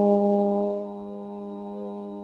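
A woman's voice holding one long, steady note of a chanted Sanskrit verse, fading down about a second in.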